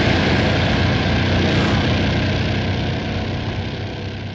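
Sound effect of a futuristic motorbike's engine running as it speeds away, a dense rumble that fades gradually.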